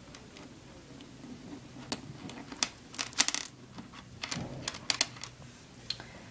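Plastic pony beads on stretchy jewelry cord clicking against one another as the beaded piece is handled: a scatter of small, sharp clicks, thickest about halfway through.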